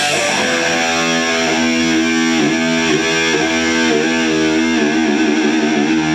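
Distorted electric guitar holding one sustained chord to let it ring out, its pitch wavering every second or so with vibrato.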